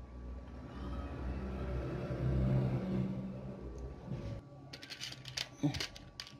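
A low rumble swells and fades over about four seconds, then cuts off abruptly. It is followed by light clicks of small electronic parts being handled in a plastic tray.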